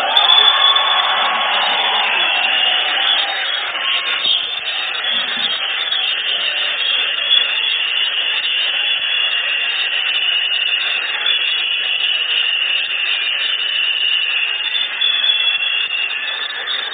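Sustained applause from a large audience, a steady, dense clapping.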